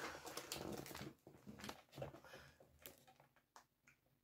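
Faint rustling and light knocks of plastic-wrapped groceries being handled, fading to near silence in the second half.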